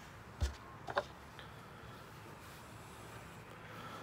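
Quiet handling noise: a soft low thump about half a second in, then a brief faint squeak about a second in, over low background hiss.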